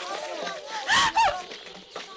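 Wordless, distressed crying out by a high voice: loud rising-and-falling wails about a second in, over lower, unintelligible voices.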